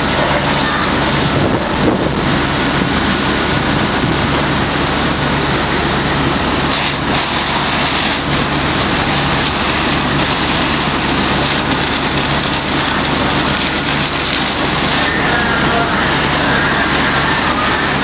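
Large vehicle engine running steadily, a constant low hum under a loud, even rushing noise, typical of a fire engine idling and pumping at a fire scene.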